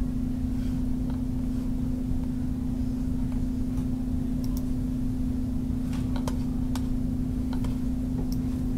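A steady low electrical hum runs on the recording. Over it come a few sharp computer mouse clicks, bunched in the second half.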